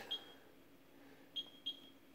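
Key-press beeps from a CAS LP-1000 label-printing scale's keypad as a price is entered: three short, high beeps, one just after the start and two close together near the end.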